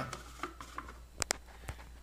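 Plastic lid of a food processor bowl being fitted and locked in place, with two short sharp clicks close together a little over a second in.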